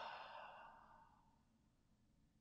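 A man breathing out long and slowly through his mouth, the sigh-like release of a deep breath, fading away about a second in.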